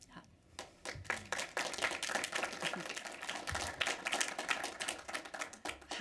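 A small audience clapping, a dense patter of hand claps that starts about half a second in and lasts about five seconds.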